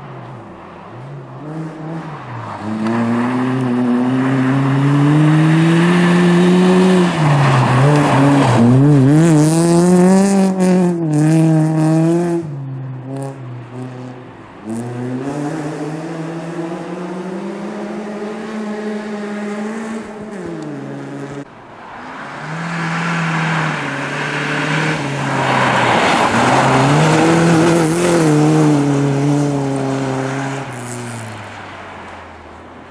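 Rally car engines revving hard as the cars pass one after another on a snowy stage: three loud spells of engine sound whose pitch climbs and falls with gear changes and lifts, the first wavering rapidly near its peak. The sound breaks off sharply about two-thirds of the way through, and the next car comes in.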